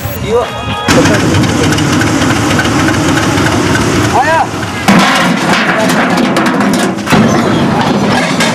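Steady rushing noise recorded on location at a water tanker train, with occasional shouted voices. It starts about a second in and changes abruptly near five seconds and again about seven seconds in.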